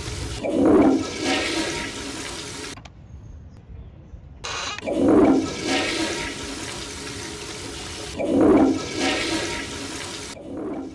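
Recorded toilet-flush sound effect played over and over: a surging gush about a second in, again about five seconds in and about eight and a half seconds in, each trailing off into a running-water wash. The sound cuts off suddenly for a moment just before the three-second mark.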